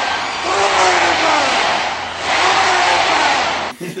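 Film soundtrack of someone fleeing through woodland undergrowth: a loud rustling hiss with a woman's short gasping cries about once a second, all cut off abruptly near the end.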